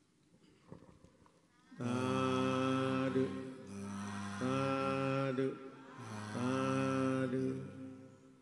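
Drawn-out Buddhist chanting by male voice: three long phrases, each held on a steady pitch, starting about two seconds in with short breaks between them.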